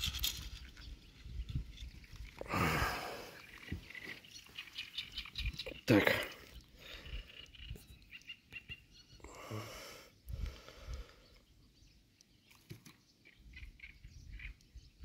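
A man's voice: a few brief muttered sounds and words with quiet stretches between them.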